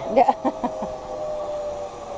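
Zip line trolley running along the steel cable: a steady whine that slowly falls in pitch.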